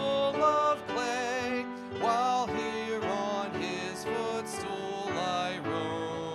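A man's voice, amplified by a microphone, leading a congregational hymn with instrumental accompaniment. The notes are held and wavering.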